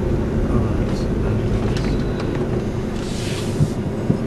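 Steady low engine and road rumble of a Suzuki car, heard inside the cabin while it drives, with a brief hiss about three seconds in.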